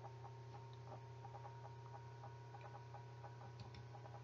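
Near silence: a recording's room tone with a steady low hum and faint, scattered light ticks.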